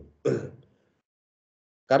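A man clears his throat once, briefly, shortly after the start.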